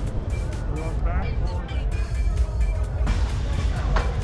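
Steady low rumble of wind and the roller coaster train on an action camera's microphone as the launched coaster waits to launch, with a brief knock about three seconds in. Faint music and voices are mixed in.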